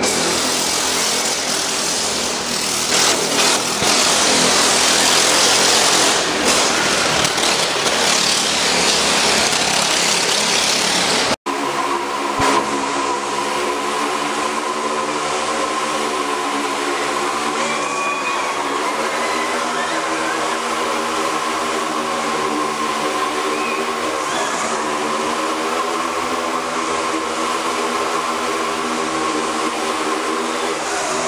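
Motorcycle engine running at high revs as a rider circles the vertical wooden wall of a Wall of Death drome. The sound breaks off sharply about eleven seconds in, then settles into a steady engine note that wavers slightly in pitch.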